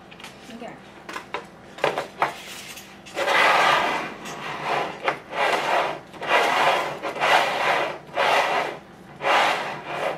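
Pringles cans being slid and shuffled across a table top, a run of rubbing scrapes about once a second starting a few seconds in.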